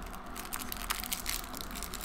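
Crinkling of a small plastic candy wrapper being handled and twisted open by hand: a run of small, irregular crackles.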